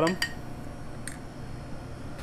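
Two light clicks of a metal spoon against crockery, one just after the start and a fainter one about a second in, while hot fudge is spooned onto a ceramic plate.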